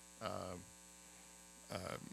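Steady electrical mains hum from the sound system, an even buzzing drone, with a man's short hesitant 'uh' just after the start and again near the end.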